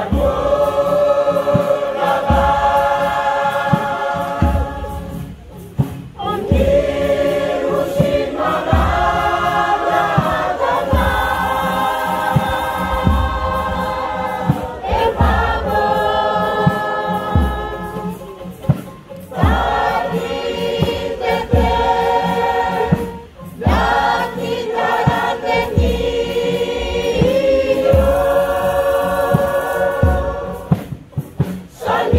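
A large choir of mostly women's voices singing a traditional Kei (Maluku) song. It moves in long held phrases with brief pauses for breath between them.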